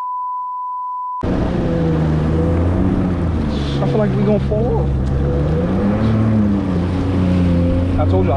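A steady test-pattern beep for about a second, cut off abruptly. Then a jet ski's engine runs under way, its pitch rising and falling with the throttle, over the rush of water spray and wind.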